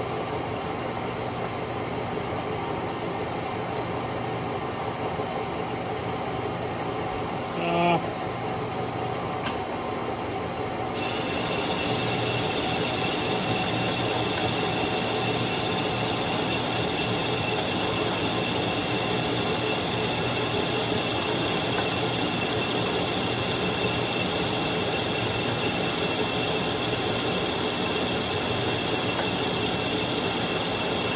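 Metal lathe running, its chuck spinning a bushing while the tool takes a turning cut. About eleven seconds in the sound gets louder, and a higher steady whine joins the machine hum as the cut goes on. A short pitched sound comes about eight seconds in.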